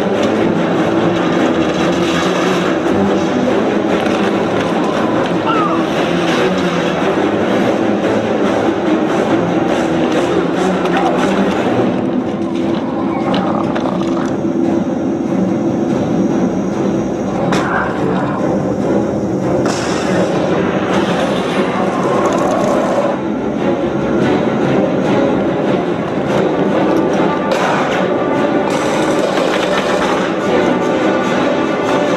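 Loud, dense film score running without a break, with action sound effects mixed in under it.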